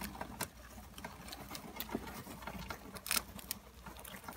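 Several hamsters nibbling and crunching crackers together. It is a rapid, irregular run of small crunching clicks, with a louder crunch about three seconds in.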